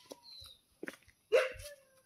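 A dog barking at approaching visitors, guarding its home: one loud bark about a second and a half in, after a few quieter sounds.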